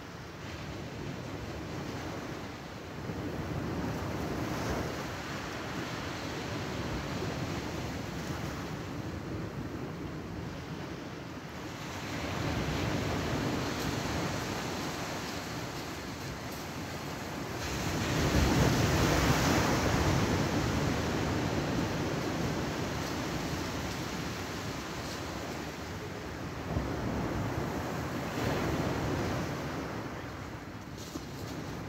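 Surf washing onto a beach in slow swells, the loudest about two-thirds of the way through.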